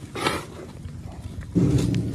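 Cattle mooing: a low, loud bellow starts about one and a half seconds in, after a short rasping noise near the start.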